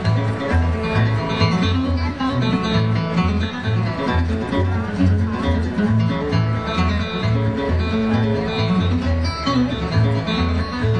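Acoustic bluegrass trio playing an instrumental tune live: mandolin and flat-top acoustic guitar picking over an upright bass that plucks about two notes a second.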